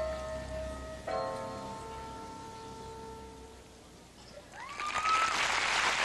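Rhythmic gymnastics floor music ending on a final held chord that fades away over about three seconds. About four and a half seconds in, the arena crowd starts applauding and cheering, louder than the music.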